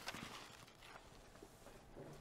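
Near silence: room tone, with a few faint light taps in the first half second.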